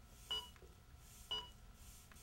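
ZOLL AED Plus Trainer 2 sounding its CPR metronome during the CPR interval, pacing chest compressions: short electronic beeps about a second apart.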